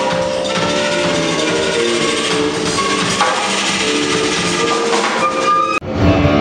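A live flute-led band playing: flute melody over electric bass and drum kit with light percussion. The sound drops out sharply for an instant near the end, then the music comes back with a different tone.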